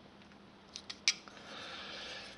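Steel calipers being handled and set down: a few small metallic clicks, a sharper clack about a second in, then a short scraping slide.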